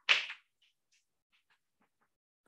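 Chalk writing on a blackboard: one louder scraping stroke right at the start, then a few faint, short chalk strokes.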